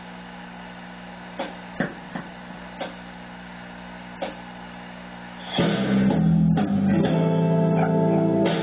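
Steady electrical hum with a few faint clicks, then, about five and a half seconds in, a blues backing track starts with electric guitar playing over it at full volume.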